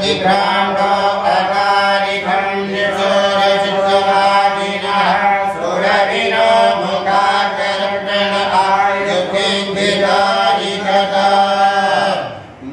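Sanskrit abhishekam mantras chanted in long, held, melodic notes over one steady low pitch.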